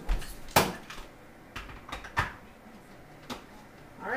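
A handful of sharp clicks and knocks spread over a few seconds: the parts of a food chopper being fitted and snapped together.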